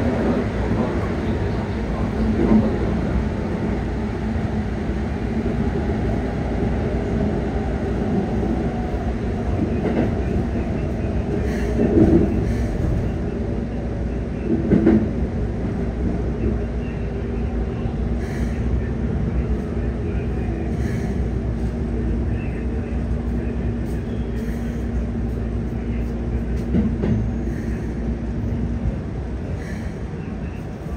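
Keikyu 600 series electric train heard from inside the passenger car while running: a steady rumbling hum with a whine slowly falling in pitch as the train slows, and a few knocks from the wheels over rail joints.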